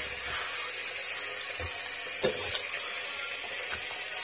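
Steady hiss of a tap running into a sink, with one brief gulp about two seconds in as a whole hot dog is swallowed.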